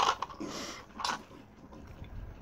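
A few short, breathy bursts of laughter from a person, three puffs in the first second or so.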